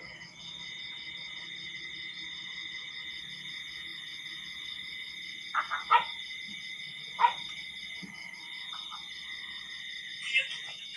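Night-time chorus of calling insects: a steady high trill with a faster pulsing call above it. Two short, sharp sounds a little past halfway are louder than the chorus.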